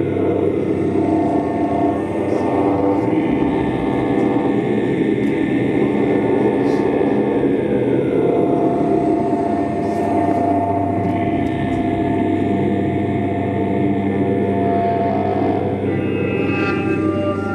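Live experimental drone music: a loud, dense low drone of sustained layered tones, with a man's voice chanting long held notes through a handheld microphone; a steady held tone rises out of the mix about halfway through.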